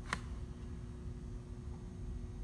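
Quiet room tone: a faint steady hum with low rumble, and one light click just after the start.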